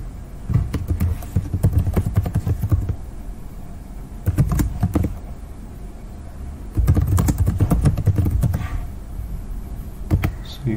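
Typing on a computer keyboard: three runs of rapid key clicks with short pauses between them.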